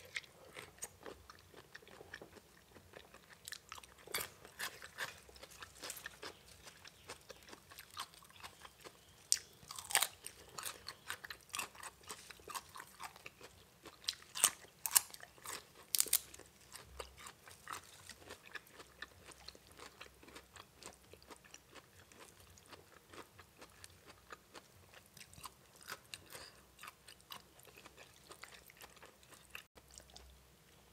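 A person chewing and crunching mouthfuls of spicy papaya salad, with irregular crisp crunches that come in clusters and are loudest around the middle.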